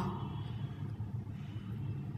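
Steady low background rumble and hum, with no distinct events.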